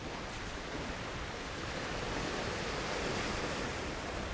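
Gentle surf washing on a sandy beach, with some wind: an even rushing noise that swells a little toward the middle and eases again near the end.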